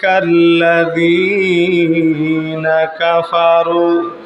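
A man's voice chanting in a drawn-out, sung style through a microphone: long held notes with slow bends in pitch, breaking briefly about three seconds in. This is the melodic intoning that a Bengali waz preacher uses in a sermon.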